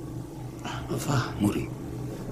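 A man's voice making short vocal sounds about halfway through, over a steady low hum.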